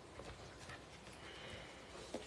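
Faint handling of paper documents: a few light taps and rustles in the first second as a sheet is lowered and set down.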